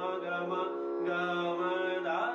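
BINA harmonium sounding a steady held drone, with a man singing long sustained notes over it that break off briefly near the middle.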